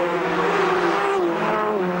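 Group A touring car engine running hard at high revs. Its pitch holds steady, then dips slightly about a second in.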